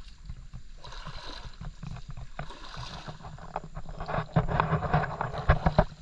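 Splashing and sloshing in shallow creek water, busier and louder in the last two seconds with quick irregular splashes.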